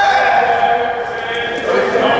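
A spectator's long, high-pitched shout, held for about a second and a half, over the chatter of a crowd in a gym.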